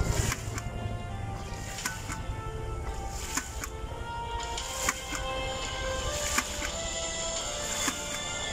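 Background music plays over a hydraulic ram pump running in a stream: water gushing from its waste valves, with sharp knocks about every second and a half.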